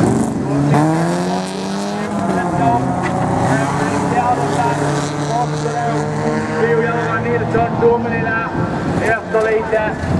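Folkrace cars' engines revving hard as they race round the dirt track. In the first two seconds an engine note rises and then falls, then the engines run on at a fairly steady pitch.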